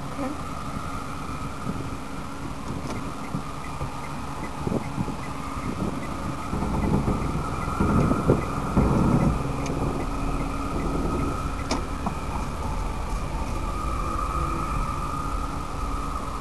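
Car engine running, heard from inside the cabin, with a faint regular ticking over the first few seconds. The engine rumble grows louder for a couple of seconds around the middle, then settles.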